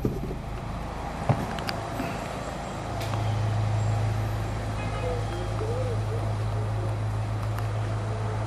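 Street traffic noise with a short knock about a second in, joined about three seconds in by a steady low engine hum that carries on to the end.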